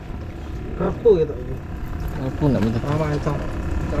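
Indistinct talking from people nearby, in two short stretches, over a steady low rumble.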